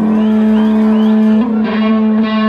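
Live band playing an instrumental passage: a harmonica holds one long note over archtop electric guitar and upright bass, the note growing brighter and pulsing near the end.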